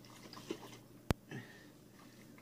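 Faint handling of a gallon jug of makgeolli being tipped to mix its settled layers, with one sharp click about halfway through.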